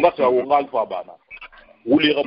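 A man talking in short bursts with a brief pause, his voice thin and cut off at the top like a phone line.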